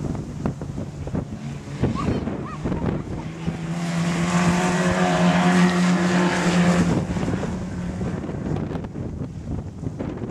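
Modstox stock car engine running hard as a car races past close by, rising to its loudest for a few seconds mid-way and then fading away. Wind buffets the microphone throughout.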